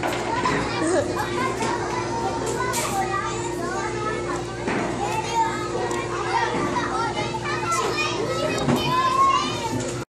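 Many children's voices chattering and calling over one another in a busy indoor play room, no words clear, with a faint steady hum underneath.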